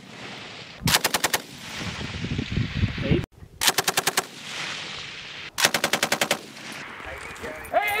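Belt-fed machine gun firing three short bursts of about eight rounds each, roughly two seconds apart, each burst followed by a rolling echo.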